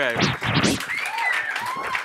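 Audience clapping, with a couple of rising-and-falling whoops in the second half.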